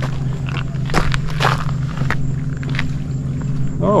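Footsteps scuffing on rock, a few short crunches about a second apart, over a steady low hum.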